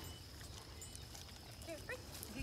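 Faint outdoor sound with a steady high thin tone, and a few short rising squeaks about a second in and near the end.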